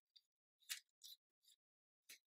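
Ramrod being slid back down into the pipes under a flintlock musket's barrel: a few faint, brief scrapes.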